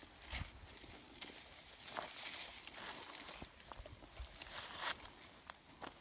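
Faint rustling and crackling of dry bean stalks and footsteps on dry ground as someone walks through the field, with scattered sharp crackles and a louder rustle around the middle.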